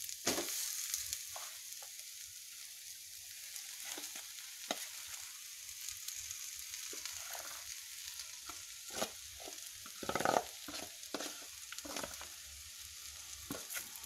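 Onions, dal and curry leaves sizzling in a metal kadai while thick rice batter is spooned in. A metal spoon scrapes and clicks against the vessel and pan now and then, most often around ten seconds in.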